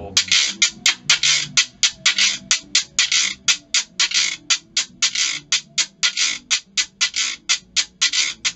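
Ridged gourd shaker shaken with both hands in a steady rhythm of short rattling strokes, about four a second, the accent coming from the change of direction on the downbeat.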